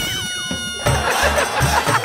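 An edited-in comic sound effect of steady and falling tones lasts under a second. Then upbeat background music with a regular thumping beat comes in.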